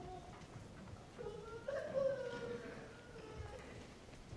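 A faint, high-pitched, drawn-out vocal call lasting about two seconds, starting a little over a second in, over quiet shuffling room noise.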